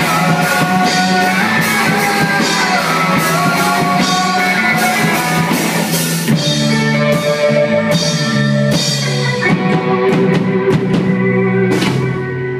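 Live rock band playing: electric guitars, bass and a drum kit with regular cymbal and drum strikes.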